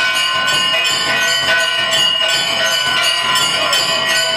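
Metal puja bells ringing rapidly and continuously, struck several times a second so that their ringing tones overlap, as worship is performed before the Durga idol.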